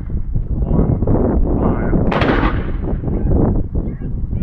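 A towed field gun firing a single shot about two seconds in: a sharp report that dies away over about half a second.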